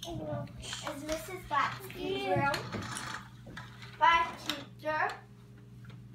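A young child's voice in several short, unclear phrases, the loudest about four seconds in.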